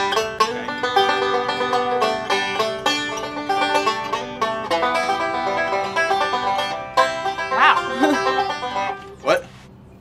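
Banjo played in a fast, continuous picking run of many quick plucked notes, stopping about nine seconds in.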